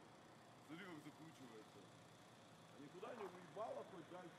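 Faint voices talking in short snatches over a quiet background hiss, once about a second in and again near the end.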